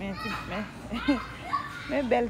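A small child's voice, calling out in high swooping tones, louder near the end.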